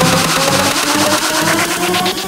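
Electro house remix playing: a build-up with a fast, repeating drum hit under held synth tones that edge upward in pitch.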